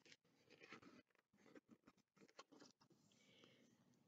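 Near silence, with a faint rustle of paper as a picture book's page is turned.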